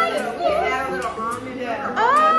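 Women's voices making wordless, gliding exclamations and murmurs, with a faint low machine hum underneath.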